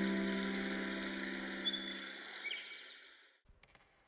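A held piano chord dying away over a steady hiss of forest ambience, with a few short bird chirps. It fades out to near silence shortly before the end.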